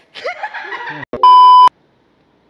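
Several people laughing for about a second, then a loud, steady electronic bleep tone lasting about half a second that switches on and off abruptly.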